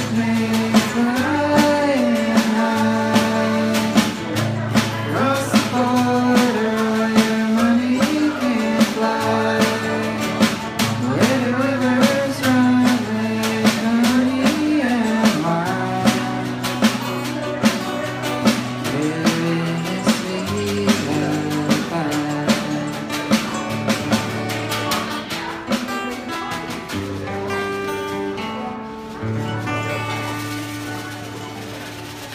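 Live acoustic country band: mandolin and acoustic guitar played over a steady drum beat, with a voice singing the melody. The music thins and grows quieter over the last several seconds as the song winds down.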